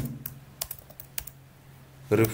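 Computer keyboard keys being typed: about five separate keystroke clicks, unevenly spaced, stopping a little past halfway, over a faint steady hum.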